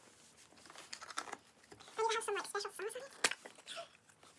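A child's high voice murmuring indistinctly about halfway through, over soft rustling of hands working modelling dough on paper, with one sharp click a little after three seconds.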